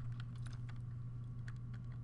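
A few faint computer-keyboard keystrokes, scattered and irregular, over a steady low electrical hum.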